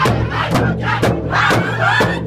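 Powwow drum group singing a crow hop song: several men's high-pitched voices in unison over steady strokes on a large shared drum.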